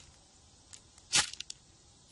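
A snack wrapper torn open in one short, sharp rip about a second in, followed by a few small crinkling clicks.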